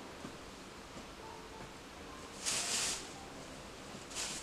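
Clothes rustling faintly as laundry is handled, with one brief louder swish of fabric about two and a half seconds in.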